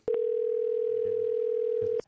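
Telephone ringback tone: one steady ring of about two seconds heard over the line while an outgoing call is placed. It follows a short click and stops as the call is answered.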